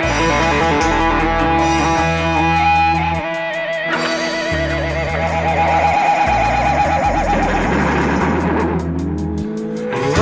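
Instrumental passage of a rock band recording: electric guitar and bass, with sustained bass notes changing every second or so under a held lead note that wavers in pitch through the middle; the sound thins out shortly before the end.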